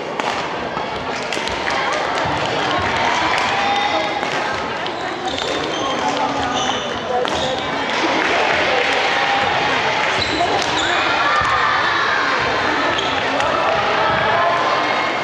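Badminton rally on a wooden gym court: sharp racket strikes on the shuttlecock and players' footsteps, over continuous voices from onlookers in a large hall.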